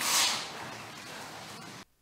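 A man blowing his nose into a cloth handkerchief: one short, hissy blow at the start, then low room noise that cuts off abruptly near the end.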